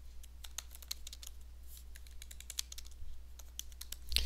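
Computer keyboard typing: a quick, faint run of key clicks as a short phrase is typed, over a low steady hum.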